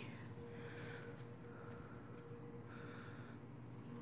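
Quiet background noise with a faint steady hum and no distinct event.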